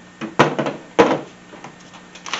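Two sharp knocks about half a second apart, then a few lighter clicks, as accessories are handled and set down in a hard plastic pistol case.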